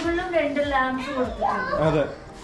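A high-pitched voice talking, its pitch rising and falling.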